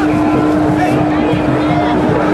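Crowd of protesters with many voices shouting and talking over one another, over a steady unbroken tone that drones throughout.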